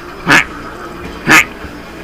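Two short, yelp-like vocal calls about a second apart.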